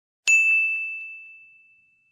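Subscribe-button sound effect: a sharp click and a single bright bell ding that rings on and fades away over about a second, with two faint ticks just after the strike.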